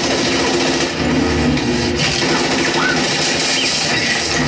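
Action-film soundtrack: a loud, steady, dense mix of mechanical-sounding noise with low pitched tones underneath, and no speech.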